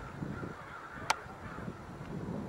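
Faint bird calls, a few short curving calls, over a low background rumble, with one sharp click about halfway through.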